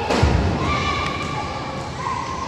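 A futsal ball thumps once, loudly, about a quarter second in, echoing in the gymnasium, over players' and spectators' shouting voices.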